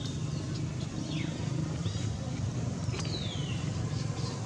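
A few short, high calls that fall in pitch, about one, two and three seconds in, the last one longest, over a steady low outdoor rumble.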